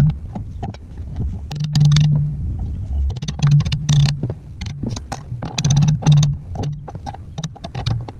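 Hammer tapping a quarter-inch steel gusset plate into position against a trailer's steel channel: many light, irregular metal knocks. A low hum comes and goes underneath.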